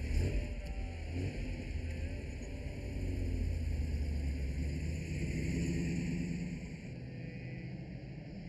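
Film soundtrack: a deep, steady low rumble under an even hiss, with faint music.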